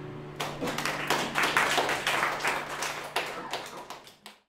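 The last strummed chord of an acoustic guitar rings out and dies away while clapping breaks out about half a second in, irregular and growing louder, then fading near the end.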